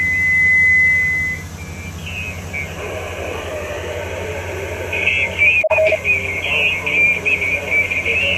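Ham radio transceiver speaker receiving a weak station's voice reply through static: a steady high tone for about a second and a half at the start, then hiss with a thin, garbled voice coming through more strongly over the last three seconds.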